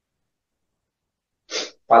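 Dead quiet, then a single short, sharp breath drawn in by a man about one and a half seconds in, just before he starts speaking again.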